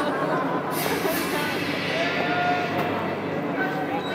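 A crowd of onlookers talking over one another, with one drawn-out voice held on a single pitch around the middle.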